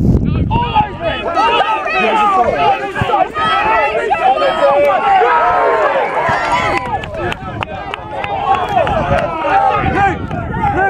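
Spectators on the touchline cheering, shouting and laughing, many voices overlapping with no single clear speaker.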